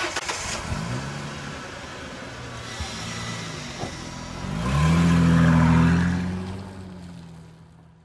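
A car engine sound effect revving up three times, about a second, three seconds and four and a half seconds in. It holds at its loudest for about a second after the third rev, then fades out.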